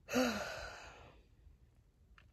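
A woman's heavy sigh: a short voiced start that falls in pitch, then a breathy exhale fading out over about a second.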